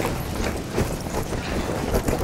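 Hurried footsteps on a hard corridor floor, a quick irregular run of steps picked up by a handheld camcorder's microphone along with its handling rustle.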